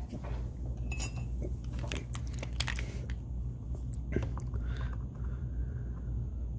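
Scattered small clicks and taps of writing tools handled on a desk: a ballpoint pen set down and a highlighter marker picked up and put to the paper. A low steady hum runs underneath.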